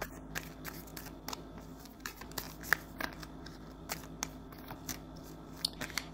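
Tarot cards being shuffled by hand: a quiet, irregular run of crisp card clicks.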